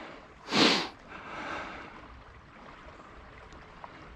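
A single short, sharp sniff through the nose about half a second in, followed by only faint outdoor background.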